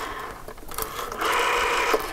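Rotary telephone dial being turned and whirring back on its spring, a steady mechanical whir in the second second.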